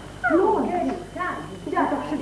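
A woman's voice speaking in short phrases, its pitch swinging sharply up and down, starting a moment in.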